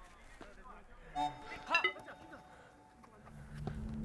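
Quiet open-air ambience with two short, faint shouted calls, then background music fading in near the end.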